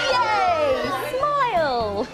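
A group of young children and adults calling out together in one long, drawn-out shout, their many voices falling in pitch, over soft background music.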